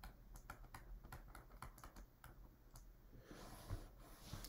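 Faint, irregular taps and ticks of a stylus writing on a tablet, several a second.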